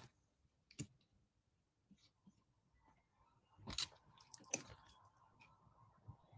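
Faint, scattered clicks and small knocks over quiet room tone, with a faint steady tone coming in about halfway through.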